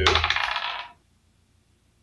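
Dice rolling and clattering on a hard surface, a short rattle lasting about a second. It is the roll for a monster's attack.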